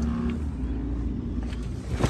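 Dodge Charger's engine idling, a steady low rumble, heard with the driver's door open.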